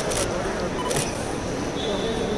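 Camera shutters clicking three times, two quick clicks at the start and one about a second in, over a steady murmur of crowd voices.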